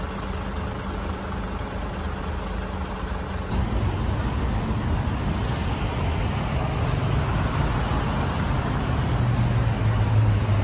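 Street traffic with a heavy vehicle's engine running close by, a low drone that grows louder about three and a half seconds in.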